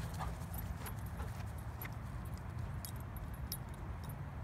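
A black goldendoodle playing close by on grass: faint jingling and scattered light ticks over a steady low rumble.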